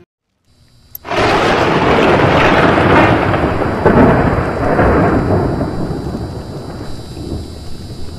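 Intro sound effect for an animated logo: a loud rushing, rumbling noise, like thunder over rain, that starts suddenly about a second in and slowly dies away.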